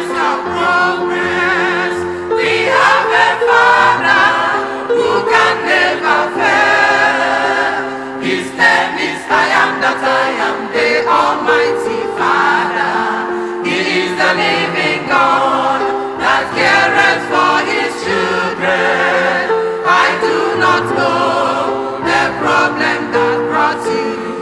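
Church choir singing a gospel hymn in harmony, with electronic keyboard accompaniment holding sustained chords.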